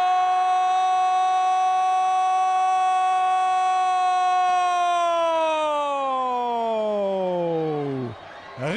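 A Brazilian football commentator's drawn-out goal cry, "Gooool", calling a goal. It is held on one high pitch for about five seconds, then slides down and trails off near the end as his breath runs out.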